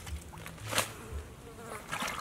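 A fly buzzing in short spells close by, with a brief rustle and knock about a second in as something is set down on the leaves.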